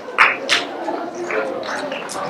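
Indistinct murmured voices with whispering, and two short sharp hisses about a quarter and half a second in.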